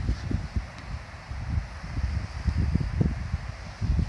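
Wind buffeting a phone's microphone in uneven gusts, a low rumble that rises and falls over a faint outdoor hiss.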